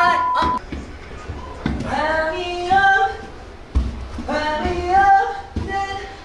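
A man singing short, loose phrases with held notes in an untrained, playful voice. A steady electronic beep tone sounds during the first half-second.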